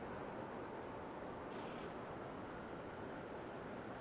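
Faint, steady street background noise, a low even hum picked up by a phone microphone, with a brief soft hiss about a second and a half in.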